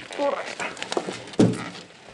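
A single loud thunk about one and a half seconds in from the hotel room door as it is unlocked with a key, with a man's voice around it.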